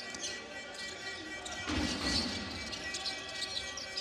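Basketball arena ambience during a break in play: crowd noise with music playing over the arena sound system, getting louder a little before the middle.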